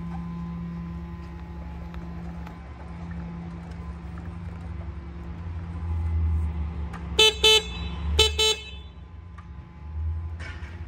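Prototype add-on electric horn on a Jazzy 600 power wheelchair, sounding four short toots in two quick pairs about seven and eight seconds in. Underneath runs a low steady rumble.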